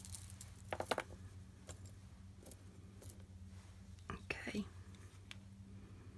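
Faint handling sounds: a few small clicks and light clinks as a metal-chain bead dangle and a ruler are moved and set down on a cloth-covered table, over a steady low hum.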